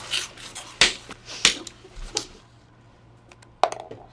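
A few sharp slaps and clicks in a small room, loudest about one second and a second and a half in, then a quick cluster of clicks near the end.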